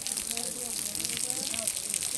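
Snowmelt water falling from a rock overhang into the pool: a steady hiss of spray with many small drops splashing. Faint voices of people talk underneath.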